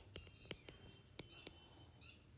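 Near silence: a few faint ticks of a stylus tapping on a tablet's glass screen during handwriting, with a faint whisper.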